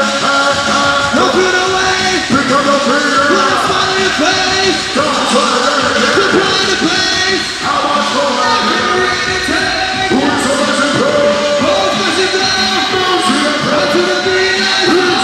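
Loud live music with an MC vocalising into a microphone over it, the voice rising and falling in pitch throughout.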